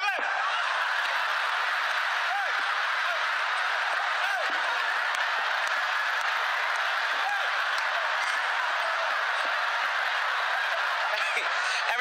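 A large theatre audience laughing and applauding, a steady sustained roar of laughter with scattered individual laughs.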